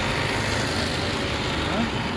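Steady roadside vehicle noise, with brief snatches of voices.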